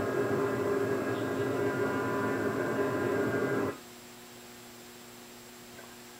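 Playback of a field recording: steady hiss and mains hum of the recording, which cuts off abruptly a little past halfway, leaving only a fainter electrical hum.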